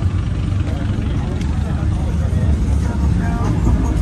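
Car engine idling nearby, a steady low rumble, with faint voices in the background; it cuts off suddenly at the end.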